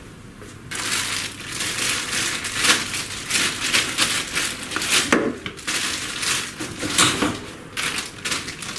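Thin plastic packaging bag crinkling and rustling in the hands as it is handled and opened, a dense run of irregular crackles starting about a second in, with a few louder crunches.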